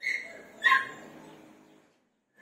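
Galgo (Spanish greyhound) giving two short high-pitched yelps: one at once, and a louder one about two-thirds of a second in.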